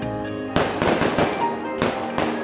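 Firecracker bursts over background music: a loud bang with crackling about half a second in, and a second bang near the end.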